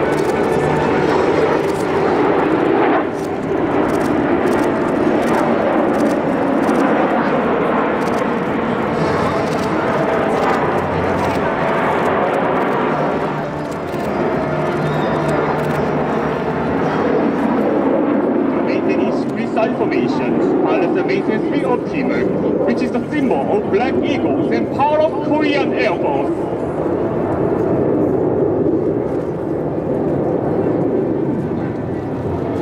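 A formation of T-50B Golden Eagle jets flying overhead, their turbofan engines making a loud, steady rush of jet noise. Voices come through over the jet noise for several seconds in the second half.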